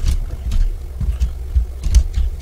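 Computer keyboard typing: several separate key presses, with a steady low rumble under them.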